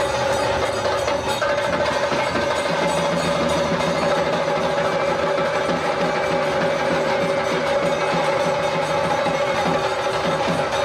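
Live traditional ritual band music: a wind instrument holding steady notes over continuous drumming and jingling percussion.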